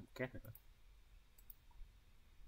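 A few faint computer mouse clicks, after a short spoken word at the start.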